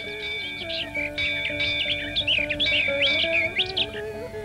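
Birds chirping and calling in quick, repeated chirps, laid over a slow, melodic plucked-string instrumental.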